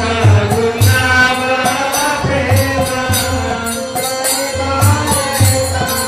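Devotional kirtan: a chanted melody sung over an even beat of jingling hand cymbals, with a deep hand drum thudding underneath.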